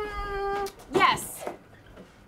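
A woman's long, drawn-out closed-mouth "hmm" as she mock-ponders a question: one steady held note that dips slightly in pitch at the end. About a second in it is followed by a short spoken word.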